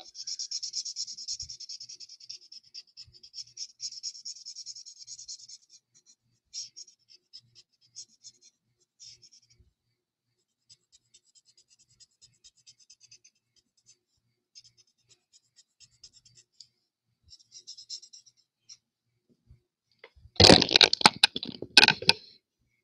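Stampin' Blends alcohol marker nib scratching across cardstock in colouring strokes, steady for the first five seconds and then in sparser short runs. Near the end, a loud burst of handling noise lasting about two seconds.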